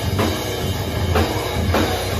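Live rock band playing loud in a small basement, the drum kit to the fore: a steady beat of bass drum with repeated cymbal and snare hits over bass and guitar.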